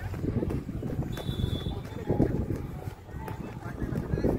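A horse trotting on a soft dirt track, its hooves thudding dully, with the handler's footsteps running alongside.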